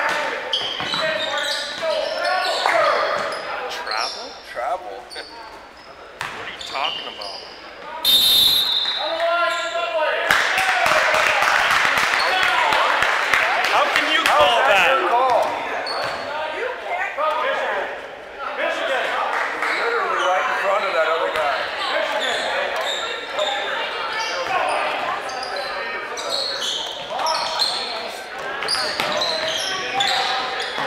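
Youth basketball game in a gym: a ball bouncing on the hardwood floor, scattered knocks and shoe noise, and the voices of players and spectators echoing in the hall. A short referee's whistle sounds about eight seconds in, and the voices grow louder for several seconds after it.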